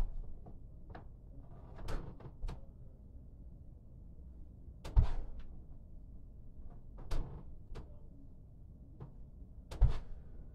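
Thuds of feet landing in lunges on a wooden floor, one every two to three seconds, the loudest about halfway through.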